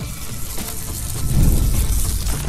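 Intro sound effect: a noisy whoosh with heavy bass under it swells to its loudest about one and a half seconds in, then eases off.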